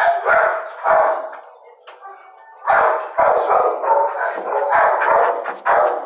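Dogs in shelter kennels barking over and over, the barks overlapping. There is a short lull a little after a second in, then the barking comes back thick and almost unbroken.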